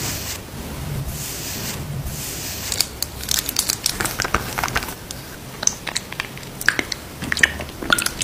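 Close-miked soft rubbing of fingertips over cream on skin, then a run of crisp, irregular clicks and taps as long acrylic nails handle a plastic cosmetic tube and lipstick case.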